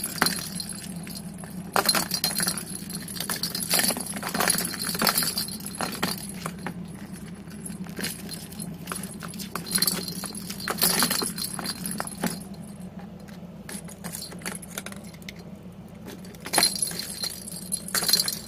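Cat batting the ball around a plastic circular track toy: the ball rattles and jingles through the track in irregular bursts of clicks. It is loudest about two seconds in, around the middle and near the end.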